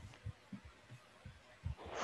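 Faint, irregular low thumps on a video-call microphone, with a short breath-like rush of noise near the end.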